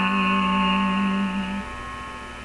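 A woman's voice holding a long sung note over a piano backing track; the note stops about a second and a half in, leaving the piano quieter underneath.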